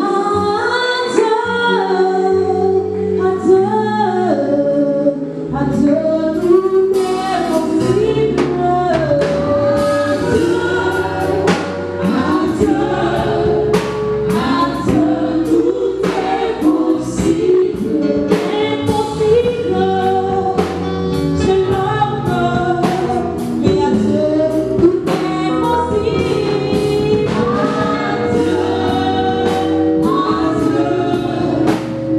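A group of women singing a gospel song together into microphones, over amplified accompaniment with held bass notes and regular percussion hits.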